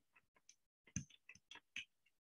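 Faint, irregular clicking of computer keyboard keys being typed, about eight to ten keystrokes.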